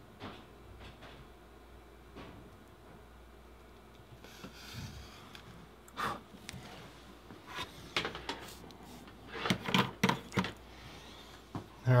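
Faint clicks and knocks of tools and small parts being handled on a workbench during soldering, louder and bunched together near the end, with a brief soft hiss about four seconds in.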